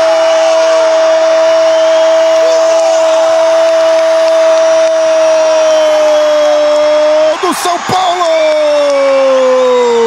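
A Brazilian television football commentator's long goal cry ("gooool") in Portuguese, held on one steady high note for about seven seconds, then a second held note that slides slowly downward, over crowd noise.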